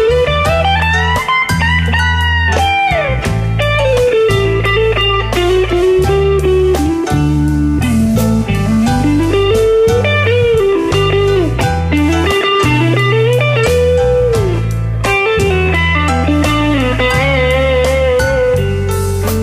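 Live band playing an instrumental break of a blues-rock song. A lead electric guitar plays a solo full of bent, gliding notes over bass guitar and drums.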